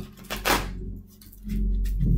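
A deck of tarot cards riffle-shuffled and bridged, a short papery whirr about half a second in. Soft background music comes back in near the end.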